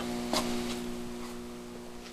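A steady hum made of several fixed pitches, with a faint click about a third of a second in.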